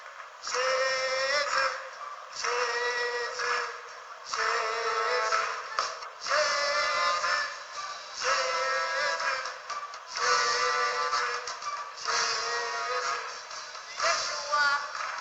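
French-language Christian worship song playing: sung phrases over music, one phrase about every two seconds.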